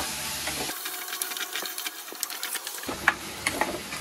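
Chopped tomatoes and onions sizzling in oil in a clay pot, a steady hiss with many small crackles. For about two seconds in the middle the sound thins to the hiss and crackles alone.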